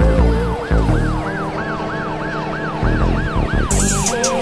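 Hip-hop beat intro with deep bass hits and a siren-like tone that yelps up and down about three times a second, coming in under a second in, with sharp hi-hat ticks near the end.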